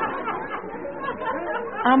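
Studio audience laughter dying away into a murmur, then a man starts speaking near the end.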